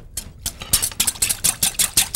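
Wire whisk beating salad dressing in a small glass bowl, quick even strokes clinking against the glass, while utensils toss salad in a larger glass bowl.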